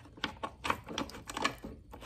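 Irregular light clicks and taps as bolts are fitted and turned by hand into a lawn mower's plastic belt cover under the deck.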